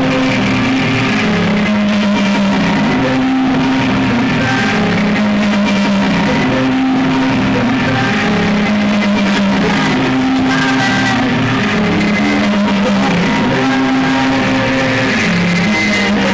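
A live rock band plays loud and steady, with guitar to the fore over sustained low notes that step between a few pitches.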